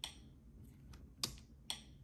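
A few separate key clicks from a compact wireless keyboard with a built-in mouse, used to work a Fire TV Stick's menus; the two loudest come in the second half.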